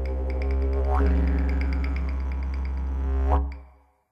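Didgeridoo music: a steady low drone with a regular tapping over it and a rising whoop about a second in, fading out near the end.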